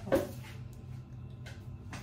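Quiet kitchen room tone with a steady low hum and a single faint click about one and a half seconds in, after a short spoken word at the start.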